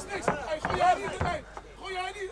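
Men shouting at ringside during a kickboxing clinch, with a dull thud of a blow landing about a second in.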